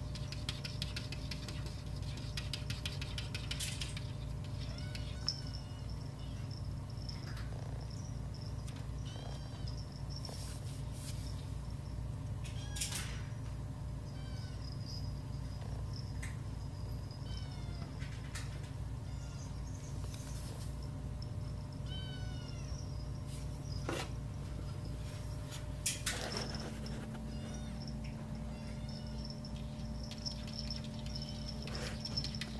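Kittens mewing again and again in short, high-pitched cries, with a few sharp clicks between them over a steady low hum.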